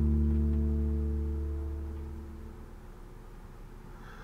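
A low, dramatic musical sting: a struck deep chord that rings on and fades away over about two and a half seconds.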